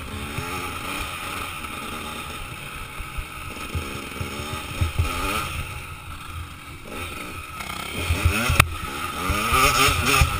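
Off-road dirt bike engine revving, its pitch rising and falling again and again as the throttle is worked over rough ground, with knocks from the bike jolting over bumps. It gets louder toward the end, with a sharp knock shortly before.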